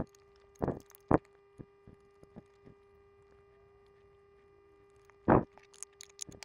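Small clicks and knocks of a black plastic project box and a panel-mount LED being handled and pushed into place: a few sharp taps in the first second or so, fainter ticks after, and one more near the end.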